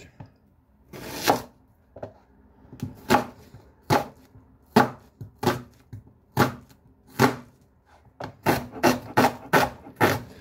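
Kitchen knife chopping an onion on a cutting board: sharp single strokes roughly a second apart, quickening into a fast run of strokes near the end.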